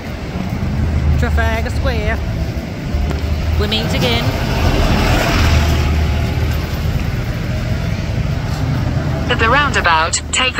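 Busy city street: a steady low rumble of road traffic with a car passing close, and snatches of passers-by's voices a few times.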